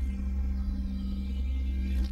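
A low, steady held synthesizer drone with a hum underneath: the sustained closing note of a TV station ident jingle.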